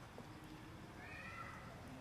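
A single short, high animal call about a second in, faint over low background noise.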